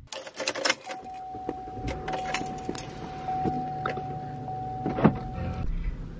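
Car key clicking into the ignition, then the car starting and running. A steady high tone sounds for about five seconds over the low hum of the engine.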